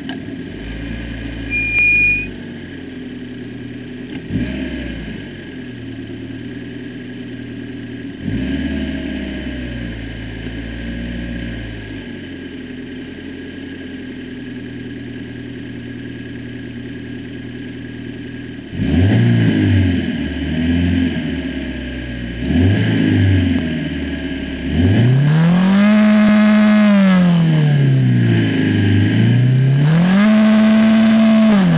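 Formula 4 race car's turbocharged 1.6-litre Ford EcoBoost four-cylinder engine, heard onboard: idling low with a few short blips as the car rolls to a stop on the grid. From about two-thirds in the engine is revved, and near the end it is held at high revs, let drop and revved up again while the car sits stationary in first gear.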